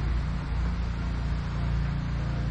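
A steady low rumble with a faint hum.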